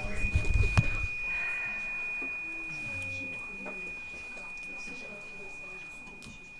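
A small metal hand bell rings one long, steady high tone that barely fades. A sharp tap comes about a second in, and faint low sliding tones sit underneath.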